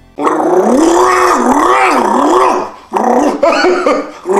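A loud growling roar standing in for the MGM lion's roar, its pitch wavering up and down for a couple of seconds. After a brief break come shorter, choppier roars near the end.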